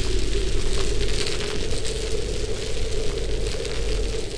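Title-sequence sound effect: a steady crackling hiss over a deep rumble and a low steady hum.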